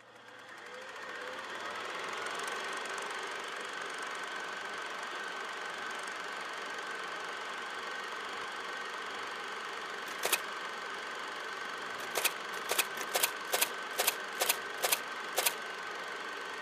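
A steady mechanical hum with a thin high whine fades in, then sharp clicks come in, one about ten seconds in and then a run of them at roughly two a second near the end.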